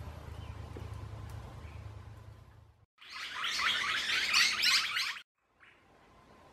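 Birds chirping and chattering densely and loudly for about two seconds in the middle, starting and stopping abruptly. Before them there is a low steady hum.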